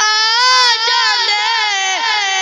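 A boy's high voice singing a naat without instruments into a microphone, holding long notes that slowly waver and bend in pitch.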